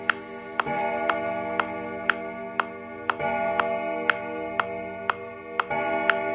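Metronome ticking steadily at about two beats a second over held musical chords that change roughly every two and a half seconds.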